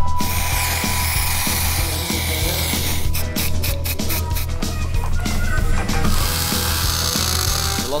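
Workshop tool sounds over background music with a steady low beat: a hiss for the first few seconds and again near the end, and a run of rapid mechanical clicks like a ratchet about three seconds in.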